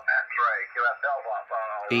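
A station's voice received on 40-metre lower sideband and played through a Xiegu X6100 transceiver's speaker: thin, narrow-band speech with no low end. A nearby man's full-range voice comes in right at the end.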